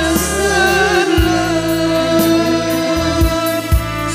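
Live gambus music: several singers singing together into microphones over the band, holding a long note from about a second in, with a few deep drum strokes.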